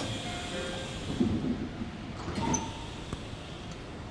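Electric commuter train's sliding passenger doors closing before departure, over a steady bed of station and train noise with a few faint short tones.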